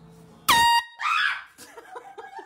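A single short, loud blast from a handheld air horn about half a second in, followed at once by a woman's startled shout and then laughter.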